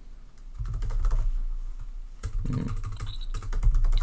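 Computer keyboard typing: quick runs of key clicks, a few about half a second in and a dense run through the second half, over a low steady hum.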